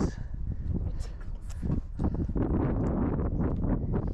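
Wind buffeting the microphone in a steady low rumble, with irregular scuffs and knocks over it.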